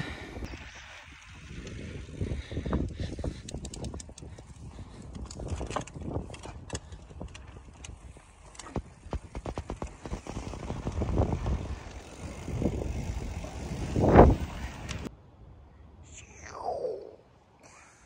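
Mountain bike being ridden over a rough trail: a running rumble from the tyres and ground, with irregular rattles and knocks from the bike. The heaviest jolt comes about fourteen seconds in.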